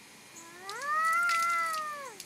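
A toddler's single long, high-pitched vocal call, starting about half a second in, rising in pitch, held, then falling away at the end.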